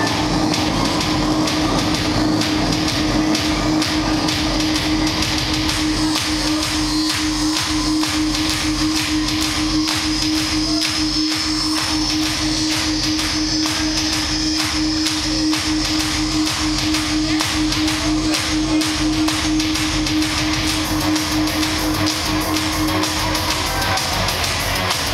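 Live electronic music through a club PA: a steady kick-drum beat under a held synth note, with no vocals. The held note stops near the end.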